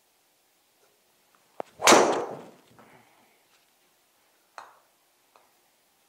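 A golf driver, 45.5 inches long with a 195 g weighted head, hitting a ball off a simulator mat: a short sharp click, then a loud crack of the strike and the ball smacking into the impact screen, fading over about half a second. A smaller knock follows a few seconds in.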